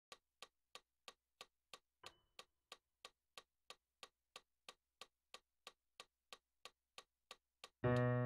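Metronome ticking steadily at about three clicks a second, then just before the end a loud chord struck on a digital piano.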